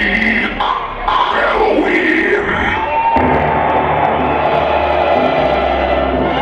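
Drum and bass DJ set played loud over a club sound system, recorded from the crowd with some crowd yelling over it. The bass drops out at first under sweeping sounds, then comes back in heavily about three seconds in.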